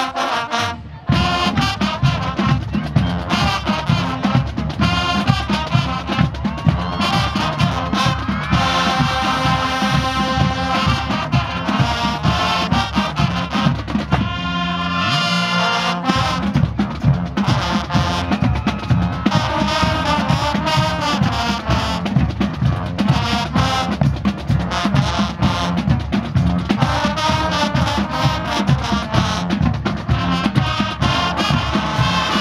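High school marching band playing: a brass section of trumpets and trombones over a drumline's steady beat, with the deepest drums dropping out briefly about halfway through.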